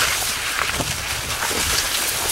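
Wind buffeting the microphone, with a low irregular rumble and a steady rustling hiss from the surrounding corn leaves.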